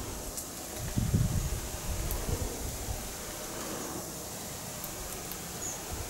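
Quiet outdoor ambience with a steady hiss, a few low rumbling bumps about one and two seconds in, and faint scattered high ticks.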